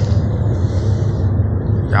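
A loud, steady low rumble, an unexplained drone from the sky that the filmer rules out as an aircraft.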